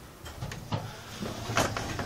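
Electric garage door opener's motor starting up about a second in, a low steady hum as the door begins to move after the home-made controller triggers it.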